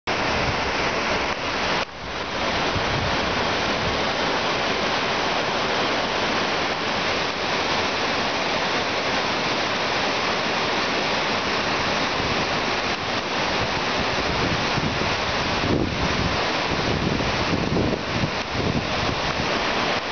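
Loud, steady rush of mountain river rapids, white water pouring over rocks in spring flood. The level dips briefly about two seconds in.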